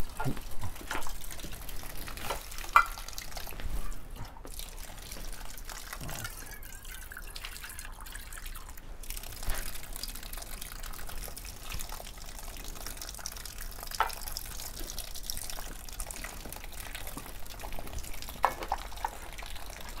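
Water running from bamboo spouts into a stone shrine purification basin (temizuya), a steady splashing trickle, with a few light knocks.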